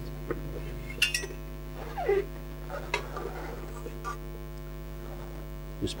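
Steady electrical mains hum, with a few light metallic clicks and taps as metal tongs lift a glowing piece of char out of the stove and set it on a metal sheet.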